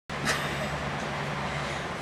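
Steady background noise: a low hum with an even hiss, with one brief soft click just after it begins.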